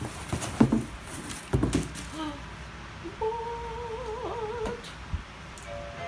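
Cardboard mailing box and crumpled newspaper packing being handled, rustling with a few knocks, over the first two seconds. A held, wavering hum-like tone follows from about three seconds in, lasting a second and a half.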